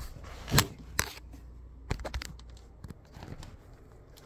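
Way of Wade 808-3 Ultra basketball sneakers stepping on a wooden floor: a few irregular footfalls and knocks, the loudest about half a second in, thinning out after about two seconds.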